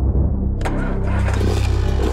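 An engine running loudly at a steady low pitch. A harsh burst of noise comes in about half a second in.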